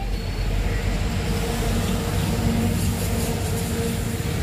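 Steady low engine rumble with a steady hum, as of a motor vehicle running nearby.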